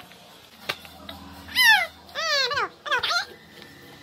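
Baby's high-pitched squeals: three short vocal cries about a second and a half in. The first and loudest falls in pitch, the second wavers up and down, and a short one follows near the three-second mark.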